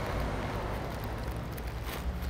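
Steady workshop background noise with a constant low hum.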